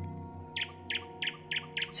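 A bird chirping, about six short, quick downward chirps from about half a second in, over a soft, steady music bed.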